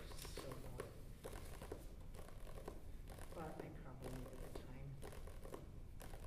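Quiet, indistinct talk in a small room, with scattered light taps and the rustle of paper pages.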